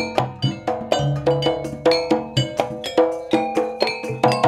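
Javanese gamelan playing: bonang kettle gongs and other bronze percussion struck in a steady, quick run of ringing notes, about four a second.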